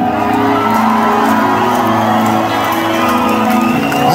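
Concert crowd cheering and shouting over amplified band music holding steady notes.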